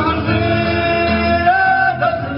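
Acoustic guitars playing with a male voice singing a Tamazight song, live on a small stage; a higher sung note is held over the last half-second.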